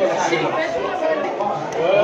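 Background chatter: several voices talking at once.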